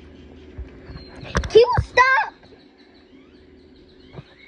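A child's voice making two short high-pitched vocal sounds, each arching up and down in pitch, about a second and a half in, just after a few knocks from the phone being handled close to the microphone.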